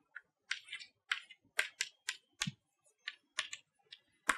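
Chalk tapping and scratching on a blackboard as symbols and letters are written: an irregular run of short sharp clicks, about three a second, with one heavier knock about halfway through.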